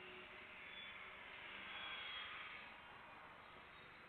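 Faint, distant jet noise from a Boeing 747 freighter's engines at takeoff thrust during its takeoff roll: an even, hiss-like roar that swells about two seconds in and then eases.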